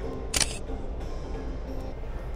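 A single camera shutter release from a Sony A7 III mirrorless camera, one short sharp click about a third of a second in. Steady background music plays underneath.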